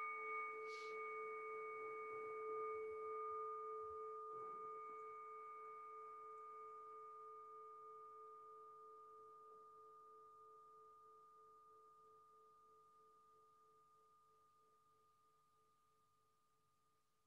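A struck meditation bowl bell ringing out with a clear, steady tone that slowly fades until it is barely audible near the end.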